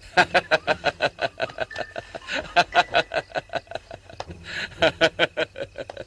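A man laughing, a long run of short rapid bursts, about five a second, with a brief break after about four seconds before it picks up again.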